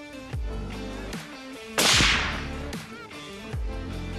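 A single suppressed rifle shot about two seconds in: one sharp crack that dies away over about a second. Background music with bass notes plays throughout.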